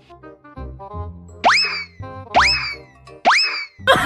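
Light comedy background music with a bouncy tune, overlaid by three cartoon sound effects, each a quick upward pitch sweep, about a second apart.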